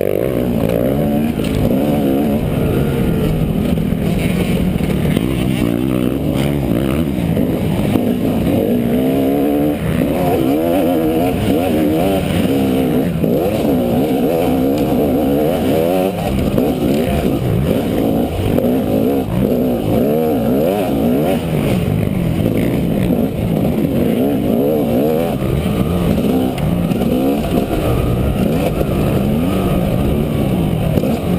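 Off-road dirt bike engine heard close up from on board, revving up and down continuously as the throttle is worked along a rough trail, its pitch climbing and dropping every second or two.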